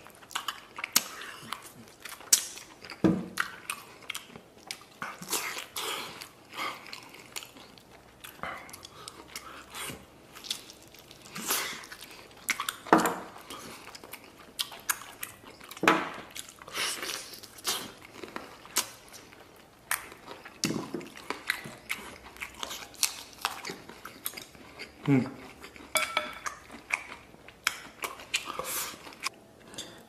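Close-up eating sounds: biting and chewing meat off braised lamb ribs held in the hand, with many irregular wet mouth clicks and smacks and a few louder bites.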